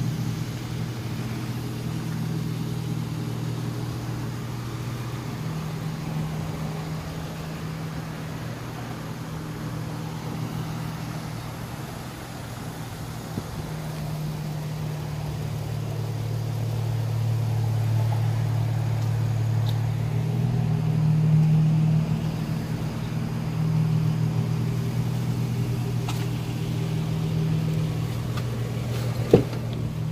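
Toyota Tacoma pickup engine idling, a steady low hum that grows louder for a few seconds in the middle. A single sharp click comes near the end.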